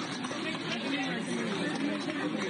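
A close crowd of people talking over one another: continuous overlapping chatter with no single voice standing out.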